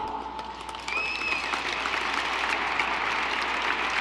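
Audience applauding, the clapping building about a second in and then holding steady.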